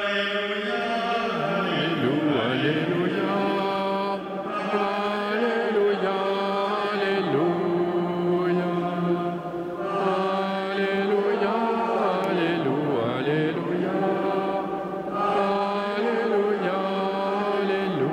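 Voices singing a slow chant in long held notes, the melody moving in gentle steps over a steady low note.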